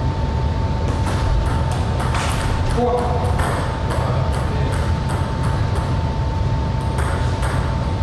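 Table tennis ball clicking off bats and table in a short rally, with a brief voice about three seconds in as the point ends, over a steady high-pitched hum and low room rumble.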